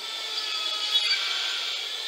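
A tool sawing through a plaster cast, a steady cutting noise heard from a documentary soundtrack played over speakers in a room.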